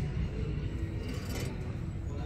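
Faint background music over store room noise, with a light clink about halfway through as a ceramic vase is lifted off a wire shelf among glassware.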